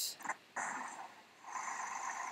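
A click, then a clip's outdoor ambient sound playing back from the editing timeline: a noisy hiss that fades away by about a second in, then a steady noise that returns about a second and a half in. The editor finds this ambient sound too loud.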